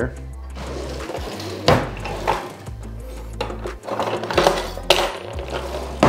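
Kitchen knives and cutlery clattering, with a few sharp metal clinks about two seconds in and again between four and five seconds, over steady background music.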